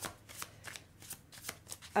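Deck of cards shuffled by hand, the cards clicking against each other in a quick, irregular run of soft snaps.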